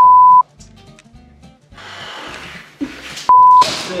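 Two loud electronic bleeps on the same single pitch, edited into the soundtrack: one about half a second long at the start and a shorter one a little over three seconds in. Between them is a stretch of hiss-like noise.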